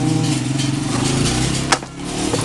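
A steady low engine hum, then a sharp click near the end as the electric fan's plastic motor cover is pried off.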